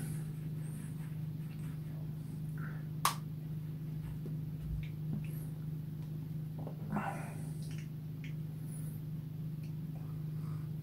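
Steady low electrical hum, with a single sharp click about three seconds in and a faint short sound near seven seconds.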